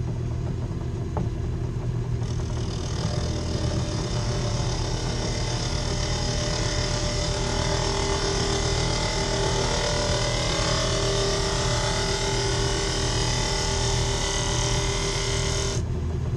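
Rikon mini wood lathe running with a steady motor hum, while a hand tool cuts the face of the spinning pine lid blank, adding a rough, varying shaving hiss from about two seconds in.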